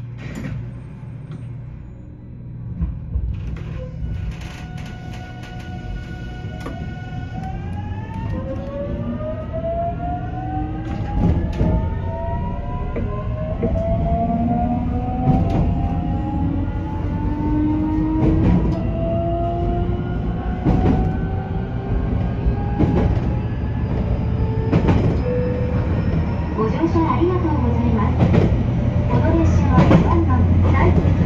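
JR Kyushu 813 series electric train accelerating from a standstill. Its VVVF inverter and traction motors give a chord of whining tones, steady at first and then sweeping upward in pitch together as speed builds. Under them the running rumble grows louder, with a regular click of the wheels over rail joints every couple of seconds.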